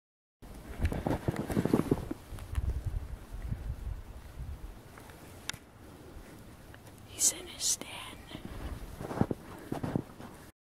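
A person whispering, with low rumbling noise on the microphone through the first few seconds.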